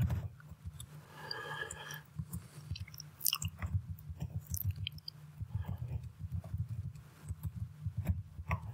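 Computer keyboard being typed on: irregular clicks of keys, over a low steady hum.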